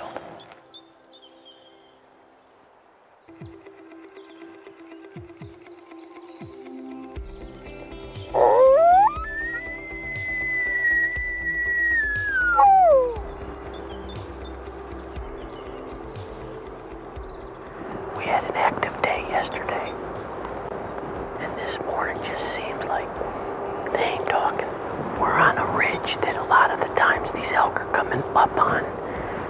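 Background music with one long bull elk bugle about a third of the way in: the call rises to a high whistle, holds for several seconds, then falls away.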